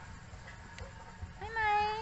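A baby macaque gives one short, loud call near the end, a clear pitched coo that rises at its start and then holds level.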